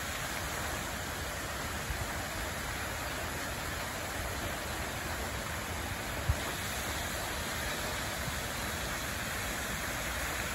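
Steady splashing hiss of pond fountains, their jets falling back into the water. There is a brief low thump about six seconds in.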